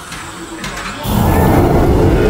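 TV drama sound effect: a loud rumbling whoosh that swells about a second in, with a low drone beneath, for ghostly gas creatures pouring out.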